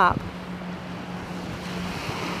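Steady beach ambience: an even wash of wind and gentle surf, with a faint steady low hum underneath.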